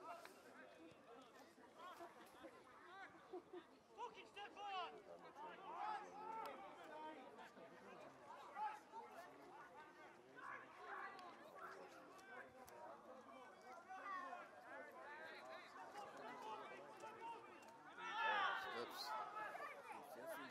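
Faint, indistinct shouting and chatter of players and spectators around a Gaelic football pitch, with a louder shout near the end.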